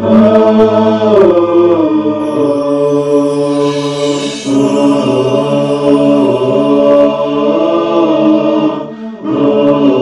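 Vocal theme music of a television programme's title sequence: voices chanting in long, held, slowly gliding notes, with a brief break about nine seconds in.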